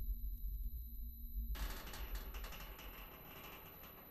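Horror-trailer sound design: a deep rumble fading away, then about a second and a half in a soft crackling hiss starts suddenly and thins out near the end.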